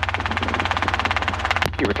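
Robinson R22 helicopter in flight, heard inside the cabin: a steady low drone of rotor and engine with a rapid, even pulsing. A sharp click comes near the end, just before a voice begins.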